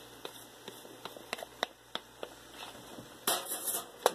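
Light, irregular taps and knocks of a wooden spoon scraping pasta sauce out of a plastic measuring cup into a cooking pot, with a short hiss near the end.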